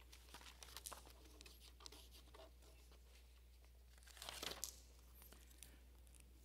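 Faint handling noise: scattered small rustles and ticks, with a louder crinkling stretch about four seconds in, as something is handled at a lectern.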